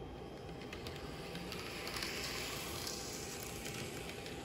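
N scale Kato-built Atlas EMD SD7 model locomotive running along the track: a faint, steady whir of its small motor and wheels on the rails, growing a little louder in the middle, with a few light clicks.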